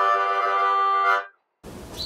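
Harmonica playing one steady held chord that stops a little past halfway, followed by a faint hiss.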